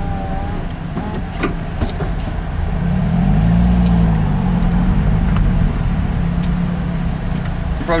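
Lotus Elise's four-cylinder engine ticking over low, then revving up about three seconds in as the car pulls away from a standstill, the note rising and easing back, heard from inside the cabin.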